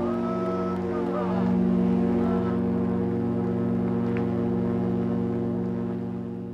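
Ship's horn sounding one long, steady blast of several tones at once, fading away near the end. A few short whistles or calls are heard over it in the first second.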